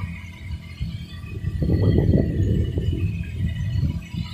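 Paddlewheel aerators churning shrimp-pond water over a steady low hum, with a rough low rumble that grows louder about one and a half seconds in.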